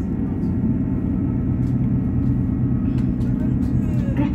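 Interior of a Class 158 diesel multiple unit under way: a steady low drone from the underfloor diesel engine and running gear, heard inside the passenger saloon, with a few faint ticks.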